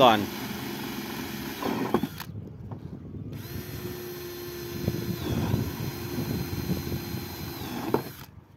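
Cordless drill with a diamond-tipped bit boring a pilot hole through a corrugated fibre-cement roof tile: a motor whine with the grinding of the bit in the tile, pausing briefly about two seconds in, then running steadily. The hole is drilled first so that the tile does not crack when the screw is driven.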